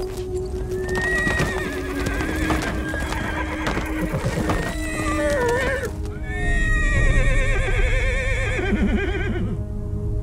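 Przewalski's horses neighing: several whinnies with a quavering pitch, the loudest a long one starting about six seconds in and stopping just before the end.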